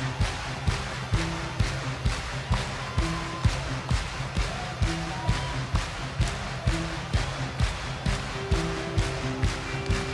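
A live electronic rock band playing an instrumental stretch with no vocals. A steady drum beat hits about twice a second under bass and short held synthesizer notes.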